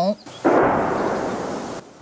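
Artillery explosion: a sudden boom about half a second in that rumbles and fades over about a second, then cuts off abruptly.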